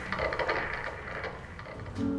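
A pause between two songs: the music dies away, leaving faint knocks and shuffles of dancers moving down onto the stage floor.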